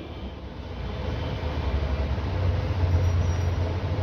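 A low, steady rumble that swells a little after the first second, with a faint even hiss over it.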